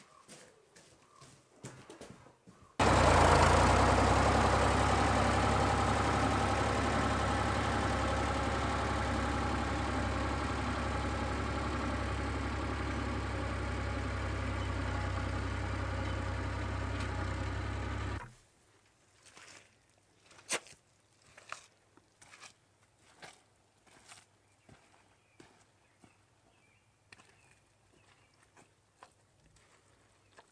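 A vehicle engine running steadily at one speed, cutting in suddenly about three seconds in, slowly getting quieter and cutting off about eighteen seconds in. After it, scattered footsteps and knocks.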